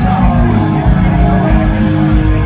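Live rock band playing loud: electric guitar through Marshall amplifier stacks over a full drum kit, heard from the audience.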